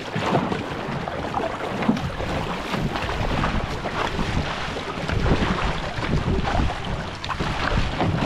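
Flat dragon boat paddle blade stroking through seawater beside an outrigger canoe: splashing and rushing water, with wind buffeting the microphone.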